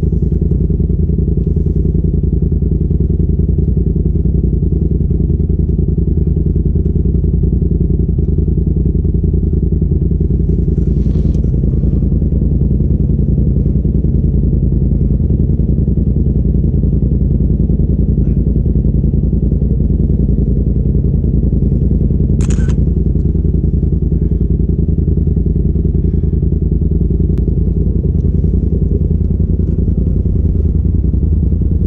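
Polaris RZR side-by-side engine running at a steady low-speed drone while the machine drives along the trail, with one sharp click about two-thirds of the way through.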